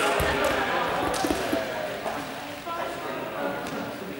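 Indistinct chatter of a group of people in a large, echoing sports hall, with a few short thuds.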